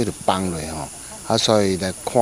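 A man's voice speaking to the camera, with a faint steady high-pitched hiss behind it.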